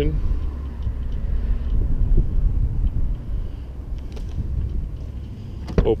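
Low, uneven outdoor rumble picked up by the handheld camera's microphone as it moves around the car, with a few faint clicks around four seconds in.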